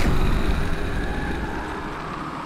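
Sound effect of a large fire burning: a deep rumble with dense noise across the range, swelling in at the start and slowly fading.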